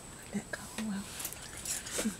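Quiet whispering and murmuring in short snatches, a few brief low hums and soft hissy sounds, over a faint steady high-pitched whine.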